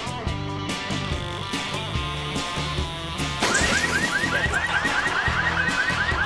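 Comedy background music with a steady beat. About three and a half seconds in, a car alarm starts sounding over it, a fast repeating rising whoop of about five per second.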